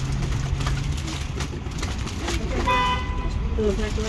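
A short single vehicle-horn toot about three-quarters of the way through, over a low steady rumble of outdoor background noise.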